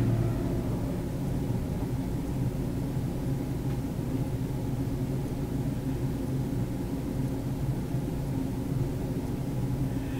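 Steady low hum of background room noise, unchanging, with no distinct events.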